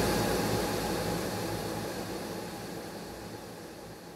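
Dense, hiss-like reverb wash trailing after a heavily echoed voice line, with a low rumble underneath, fading away steadily.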